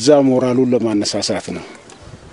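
A man's voice speaking a drawn-out phrase into press microphones. It ends about one and a half seconds in, leaving only faint outdoor background.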